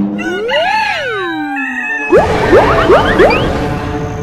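Cartoon sound effects over background music: a sliding tone that rises and then falls over the first two seconds, then a noisy burst with several quick rising zips.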